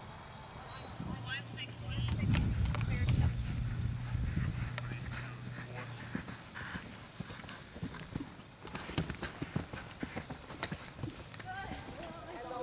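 Hoofbeats of a cantering eventing horse on grass turf, growing into a quick run of sharp thuds in the second half as the horse comes up to a jump. Early on, a louder low rumble with a steady hum lies under them.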